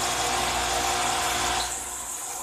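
A small electric motor or fan running steadily: an even whirring noise with a steady hum under it, which drops in loudness shortly before the end.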